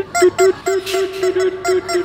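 Yellow rubber chicken squeeze toy being squeezed in quick succession, giving short honks of the same pitch, about four a second.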